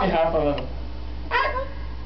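Talking that trails off, then one short, high-pitched vocal cry about halfway through.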